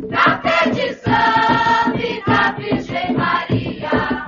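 An Umbanda ponto (devotional chant song): a group of voices sings in chorus over a percussive beat.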